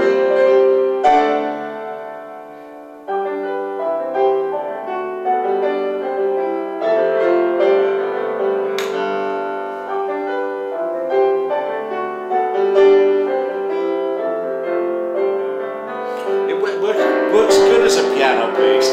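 Piano playing a slow, chordal passage of sustained notes. The sound fades about a second in and comes back suddenly at about three seconds, and voices and laughter come in near the end.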